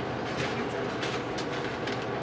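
Steady room noise with a few faint short taps and rustles.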